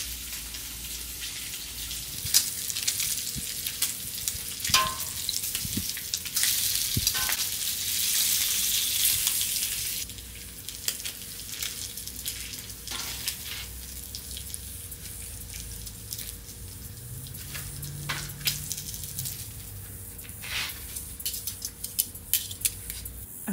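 Bacon sizzling on a Blackstone flat-top griddle, a steady hiss scattered with sharp pops and clicks. The sizzle grows louder for a few seconds near the middle, then drops back.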